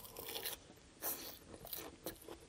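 Close-miked bite and chewing of a forkful of crisp lettuce salad, the leaves crunching in a few short bursts.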